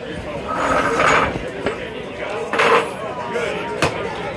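Indistinct background voices with two sharp clicks, one about halfway through and one near the end.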